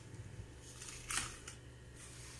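A few faint scrapes and clicks of a knife and steel dishware as coconut burfi is cut on a steel plate, the loudest a short scrape just over a second in.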